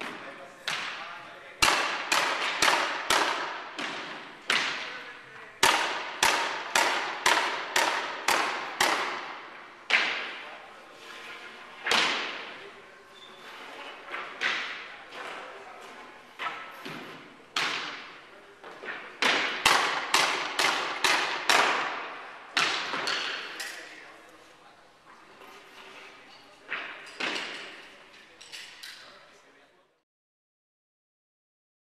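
Pneumatic hardwood flooring nailer firing as floorboards are nailed down: sharp bangs in quick runs of several shots, each echoing around a large hall, thinning out toward the end.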